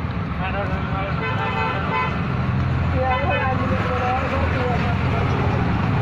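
A steady low rumble, like an engine or passing traffic, runs throughout. Voices and wavering pitched tones sound over it from about a second in until about four and a half seconds in.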